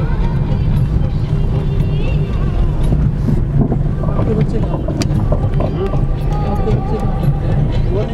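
Steady low rumble of a vehicle's engine and road noise heard inside the cabin while driving.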